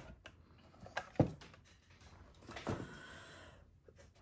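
Handling of a Fiskars paper trimmer and cardstock on a desk: two knocks about a second in, the second louder, then a short sliding rustle of card.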